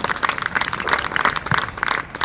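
A group of people clapping their hands together, many quick overlapping claps in a dense patter throughout.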